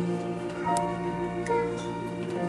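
Church organ and piano playing a hymn: held organ chords with piano notes struck over them, plus a couple of light clicks about a second in and again near the end.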